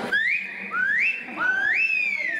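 A person whistling loudly: three rising whistles in quick succession, each sweeping up and then held, the third held longest.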